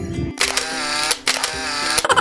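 Background music broken by an edited-in camera shutter sound effect: about a third of a second in the bass cuts out and a bright shutter-like sound plays, with sharp clicks a little past the middle.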